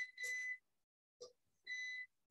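A high, steady whistle-like tone with fainter overtones above it, over a faint hiss. It sounds twice, each time for about half a second, with a faint tick between.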